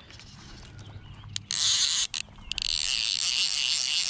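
Fly reel's click-and-pawl ratchet buzzing rapidly while a hooked bluegill is played on a fly rod. It starts about a second and a half in with a few sharp clicks, then runs on steadily.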